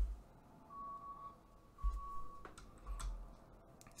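Quiet small room with a few faint clicks, a couple of low bumps and a faint steady tone for a second or so in the middle.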